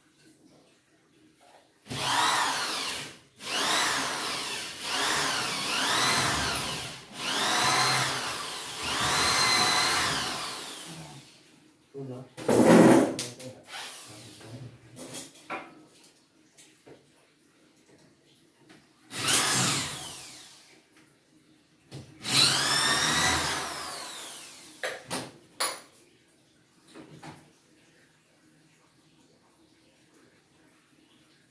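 Cordless drill run in a string of bursts, its motor speeding up and slowing down as the trigger is squeezed and eased, working on a steel door frame. A single loud thump comes a little before halfway, then two more drill runs and a few short clicks.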